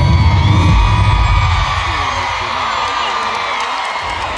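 Live R&B band ending a song over a cheering, whooping crowd. The band's bass stops about halfway through, and a held note fades out beneath the cheers.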